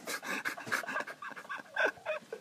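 Breathy, giggling laughter from a person: a quick run of short panting-like bursts, loudest near the end.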